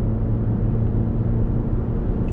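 Toyota Highlander hybrid's 2.5-litre four-cylinder engine running at a steady pitch under acceleration, with road and tyre rumble, heard inside the cabin.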